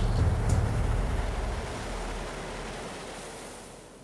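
A rumbling wash of noise with a sharp hit at the start and another about half a second in, then fading steadily away as the closing sound design ends.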